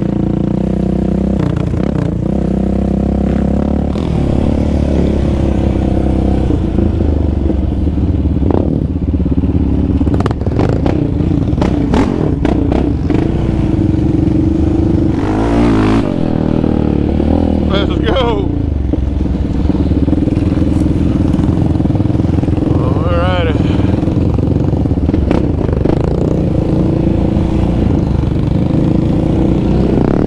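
Yamaha Raptor 700 ATV single-cylinder engines running on a dirt trail, the throttle opening and closing so the engine note rises in surges several times, with rattling from the quad over rough ground.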